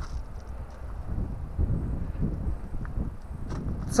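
Low, uneven outdoor rumble with a few faint ticks, the kind made by wind on a handheld camera's microphone.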